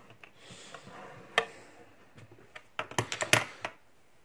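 Light clicks and taps of a small brass lock and metal pieces being handled and set down on a hard plastic tray: one sharp click about a second and a half in, then a quick run of clicks near the end.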